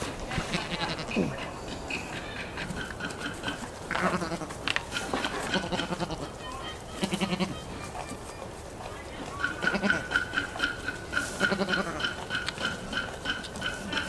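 Goats calling in a series of short bleats, then one long quavering bleat through the last few seconds.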